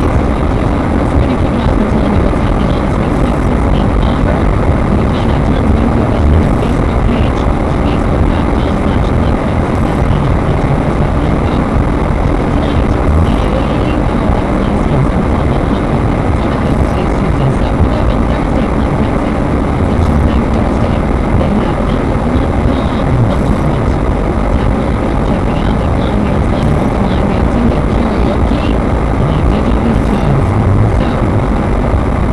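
Car interior driving noise picked up by a dashcam's built-in microphone: a steady low rumble of engine and tyres on the road. A faint tick comes about every three seconds.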